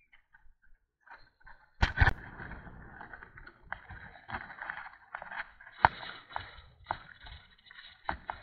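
Bicycle riding on an asphalt road: almost nothing at first, then two loud knocks about two seconds in, followed by steady rushing road and air noise with frequent small knocks and rattles from the bike.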